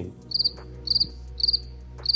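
Cricket chirping: four short, high trilled chirps about half a second apart over a faint low hum. It is the comic 'crickets' cue for an awkward silence.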